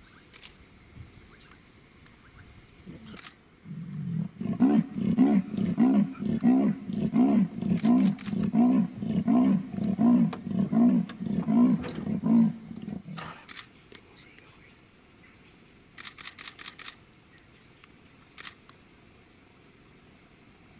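Female leopard giving her sawing call: a series of about sixteen grunting strokes, about two a second, starting some four seconds in and lasting about nine seconds. This is the call a female leopard uses to call a male.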